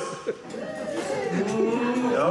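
A person's voice with long, drawn-out held notes, half speech and half song, and a short lull about a quarter-second in.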